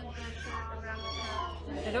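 Background chatter of several voices over a steady low hum, with a brief high-pitched cry about a second in that slides slightly down in pitch.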